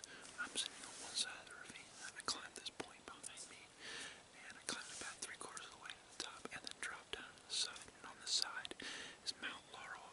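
A man whispering close to the microphone, breathy and hushed, with sharp hissing consonants.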